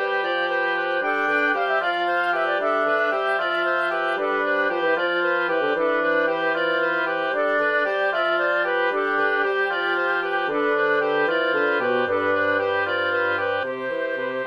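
A wind quartet in C major played back by notation software. A melody runs over repeating eighth-note figures in the inner voices and a bass line, with a long low bass note near the end.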